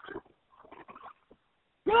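Voices over a telephone line: one trails off, a few faint short noises follow, then a man's voice starts again near the end.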